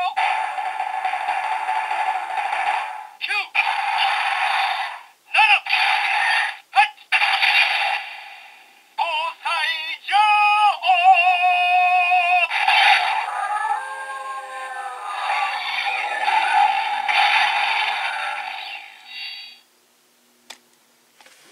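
A toy's small built-in speaker playing a synthesized-sounding sung and voiced music clip, its round display lit in purple. It runs with a few short breaks and stops just before the end.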